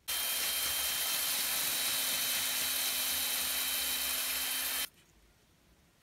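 Cordless drill clamped in a bench vise, spinning a sanding drum: it runs steadily with a faint whine for almost five seconds and then stops abruptly.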